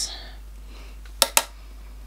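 Two quick, sharp clicks of a hard object, about a tenth of a second apart: a makeup brush tapping against an eyeshadow palette as it picks up pink shadow.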